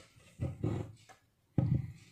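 A few short, separate knocks and scrapes of handling: chopped turmeric, ginger and date pieces going into a plastic blender cup and scraps being swept off a plastic cutting board. The sharpest knock comes near the end.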